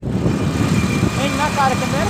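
Motorcycle running on the road while riding, with heavy wind rumble on the microphone; a man's voice comes in over it about a second in.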